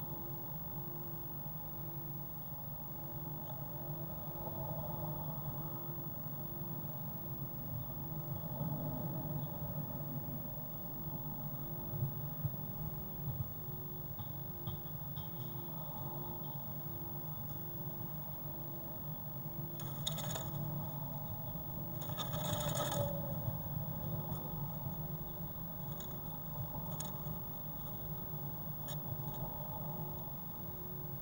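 Steady low electrical hum with a faint tone pulsing just over once a second. Two brief scratchy rustles come about two-thirds of the way through.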